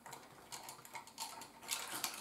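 Light, irregular clicks and scrapes of small insulated spade connectors being pushed onto the metal terminal tabs of organ stop switches, mixed with cloth sleeve rustle; the clicks come thickest and strongest near the end.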